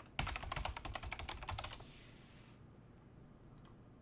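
Typing on a computer keyboard: a quick, fairly faint run of keystrokes lasting about a second and a half, then quiet.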